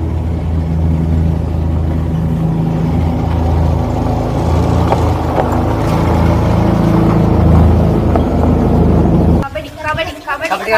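Old car's engine running steadily as the car drives past over grass, slightly louder in the middle, then cut off abruptly about nine and a half seconds in.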